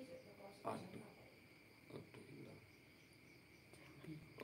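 Near silence: faint room tone with a thin, steady high-pitched ringing throughout, and a short faint murmur about a second in.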